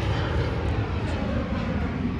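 A steady low rumble with a broad hiss over it.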